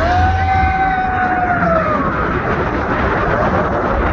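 Roller coaster train running fast out of a tunnel, with a steady rush of wind and track rumble. Over it, a rider's long scream rises slightly and then falls in pitch over the first two seconds.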